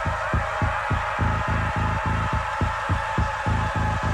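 Electronic acid techno track: a rapidly pulsing bass pattern, about four or five pulses a second, under sustained synthesizer tones.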